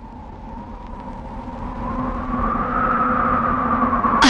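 Low rumbling drone from a film song's soundtrack, swelling steadily louder, with a faint tone that glides slowly up and back down as it leads into the song.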